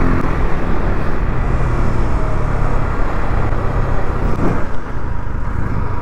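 KTM RC 390's single-cylinder engine running at a steady pace while the motorcycle is ridden along the road, with wind and road rush heavy on the rider's camera microphone.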